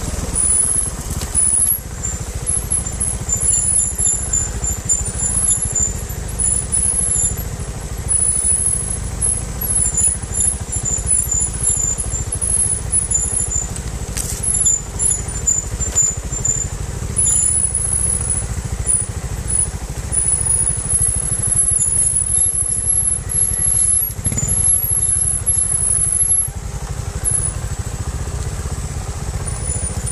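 Trials motorcycle engine running as it rides a rough dirt trail, heard from the onboard camera with a heavy, uneven low rumble. A thin, very high squeal comes and goes over it, wavering in pitch.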